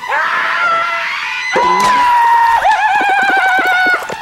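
Loud, drawn-out screaming. The scream rises at the start, holds a high note from about a second and a half in, then turns into a warbling, wavering shriek for the last second and a half.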